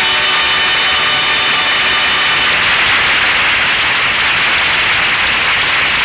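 A sustained chord of music fades out over the first two seconds or so into a loud, steady rushing noise.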